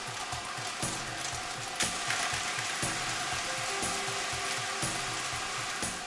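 Numbered lottery balls tumbling and rattling inside six spinning clear drum machines: a dense, steady clatter of many small knocks.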